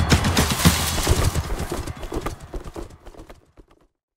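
Galloping horse hoofbeats, a rapid drumming of strikes over a low rumble, fading out over the last second or so.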